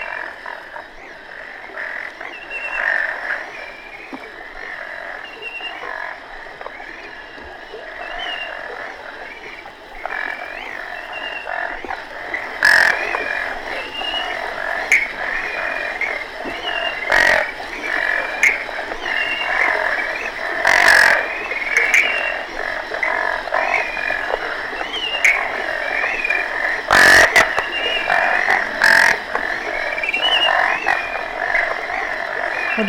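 Chorus of several species of frogs calling together in a swamp, on an early reel-to-reel tape field recording from 1954. The dense, overlapping calls grow louder about a third of the way in, and several sharp clicks stand out above them.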